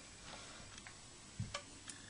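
Quiet room tone with a soft low knock about one and a half seconds in and a sharp tick just before the end, from a metal flute being handled and raised to the lips.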